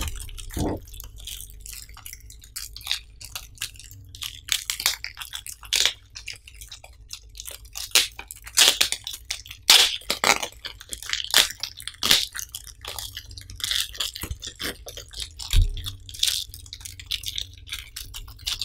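Thin clear plastic bag crinkling and crackling as hands pull it open and work it off a rolled-up mouse pad, in irregular bursts of crackles and rustles, loudest toward the middle.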